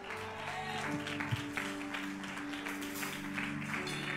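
Nord Stage electric keyboard playing soft, sustained held chords.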